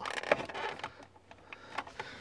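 A few light plastic clicks and cable rustling as an aerial lead, fitted with an adapter, is pushed into the antenna socket on the back of an aftermarket car stereo head unit.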